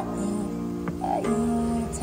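Instrumental backing track of a slow ballad playing through a small amplifier between sung phrases, with a woman's voice coming in on a short, slightly wavering low note in the second half.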